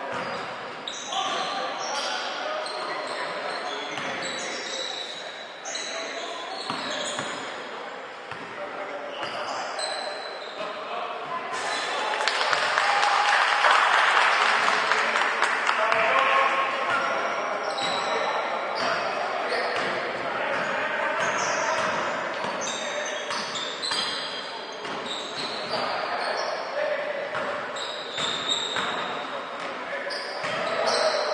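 Basketball game play in an echoing gym: a ball bouncing on the hardwood floor, sneakers squeaking, and players calling out, getting louder and busier about halfway through.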